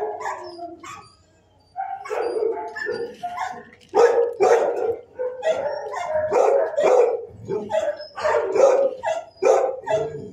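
Shelter dogs barking over and over, the barks overlapping almost without a break apart from a short gap about a second in.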